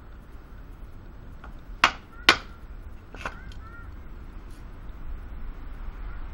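Knife work on a branch laid on a wooden chopping block: three sharp knocks as the blade is struck into the wood, two loud ones close together about two seconds in and a lighter one a second later.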